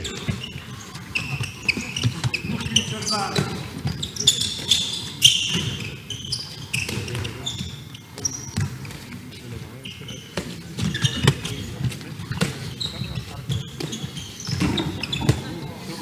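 A handball bouncing and being caught on an indoor court, with players' shoes squeaking on the hall floor in short, irregular chirps, amid faint indistinct voices.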